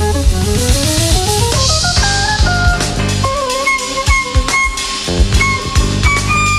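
Jazz quartet of flute, piano, electric bass and drums playing live: a quick rising run of notes, then long held high notes with a slight waver over busy drums. The low end thins out for about two seconds in the middle.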